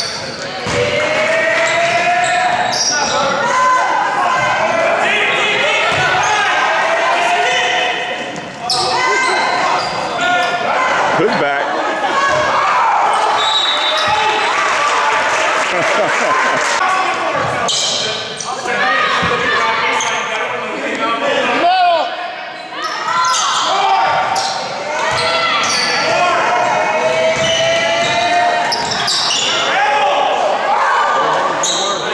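Spectators and players in a school gym shouting and chattering over one another, with basketballs bouncing on the hardwood court now and then.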